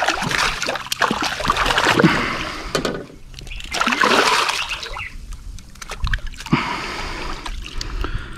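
A large estuary cod thrashing at the water's surface beside a boat, splashing hard in two main bursts over the first five seconds, then quieter as it is lifted out.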